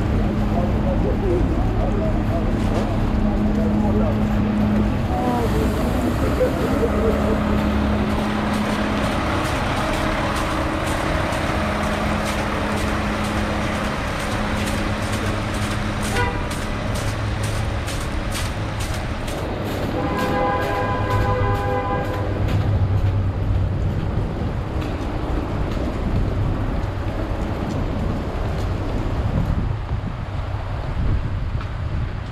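City street traffic noise, with a sanitation garbage truck's engine giving a steady hum through roughly the first half. A vehicle horn sounds once for about two seconds, around two-thirds of the way through.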